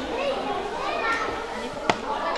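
Adults and children talking over each other, with high-pitched children's voices among them, and one sharp click near the end.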